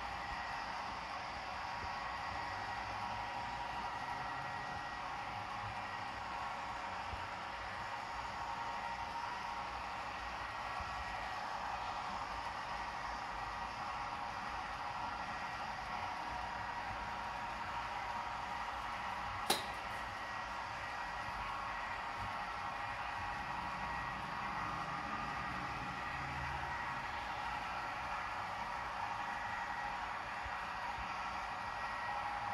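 Steady rolling whir of a long HO-scale model freight train of hopper cars running along the track, with one sharp click about two-thirds of the way through.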